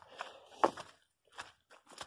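Footsteps on wet, muddy grass: a few uneven steps, the firmest about two-thirds of a second in.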